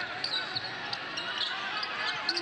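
Basketball being dribbled on a hardwood court, with short high-pitched sneaker squeaks.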